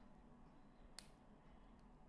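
Near silence, with one faint sharp click about a second in as fingertips pick at the protective plastic film on a keyboard stand's gel pad.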